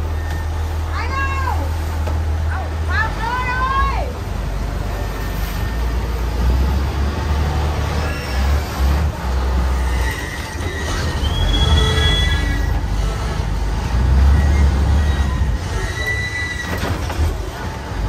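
Express boat engine running with a steady low rumble heard inside the pilot's cabin, its strength shifting a few times. Near the start, three short high calls rise and fall in pitch over it.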